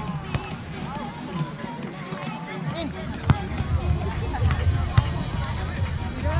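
A volleyball struck by hands three times in a rally: sharp smacks about a third of a second in, around three seconds in and near five seconds. Background music and distant chatter play underneath throughout.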